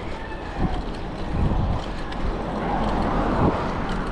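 Wind rushing over an action camera's microphone on a moving mountain bike, a steady rumbling noise that swells about three seconds in.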